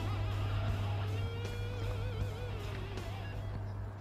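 Suhr Modern Custom electric guitar playing sustained single notes with wide vibrato over a steady low hum.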